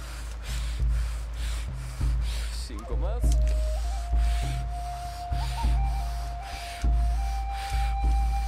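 A man breathing fast and deep, in and out in an even rhythm of roughly one full breath a second: paced power breathing stepped up to its fastest round. Underneath runs background music with a low pulse, and a long held tone comes in about three seconds in.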